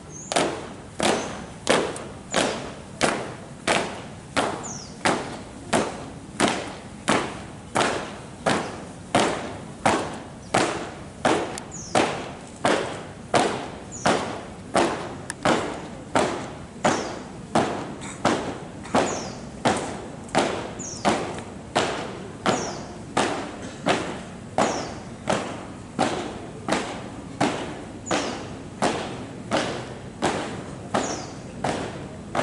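Marching footsteps of a squad stamping in unison on hard pavement: a steady, even beat of sharp thuds, just under two steps a second.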